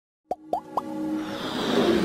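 Animated logo intro sound effects: three quick rising plops close together, then a whoosh that swells and builds over a held tone toward the end.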